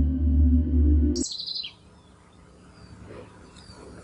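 Ambient music drone of steady low tones that cuts off suddenly about a second in. A bird then gives a short chirp falling in pitch, followed by quiet outdoor background with a few faint chirps.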